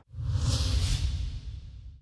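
A TV news channel's logo ident sound effect: a whoosh over a deep rumble. It swells up just after a brief silent gap, peaks around the first second, and fades away.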